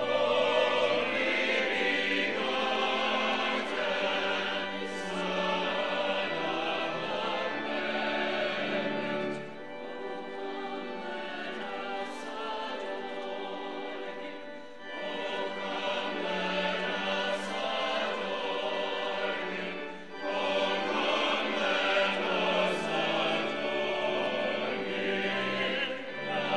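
Choir and congregation singing a Christmas carol together, in sustained phrases with brief breaks between lines.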